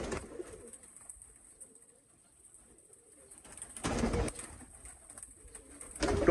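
Domestic pigeons cooing faintly in a small loft, with a brief rustle about four seconds in.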